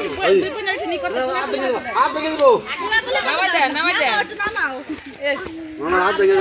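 Several people talking over one another, with voices overlapping.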